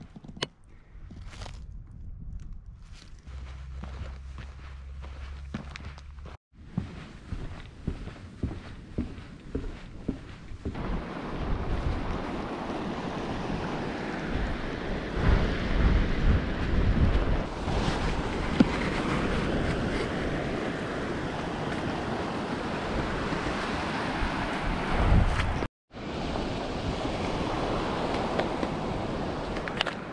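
Wind rushing and buffeting on the microphone over surf washing on a beach. It is quieter for the first ten seconds, then loud and steady with gusty surges, and it drops out to silence briefly twice.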